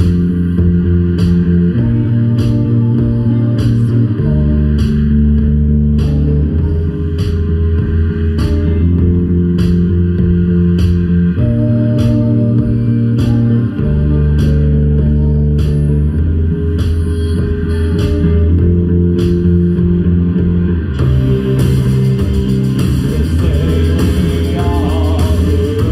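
A live band playing an instrumental rock passage: a bass line of long low notes that change every couple of seconds, with keyboards, over a steady beat of sharp clicks. A brighter hiss joins the beat near the end.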